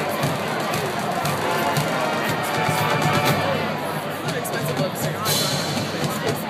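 Marching band playing on a stadium field, with spectators chattering close by.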